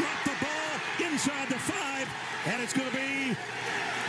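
Speech: a television football commentator's raised voice calling the play, with a few faint clicks in the background.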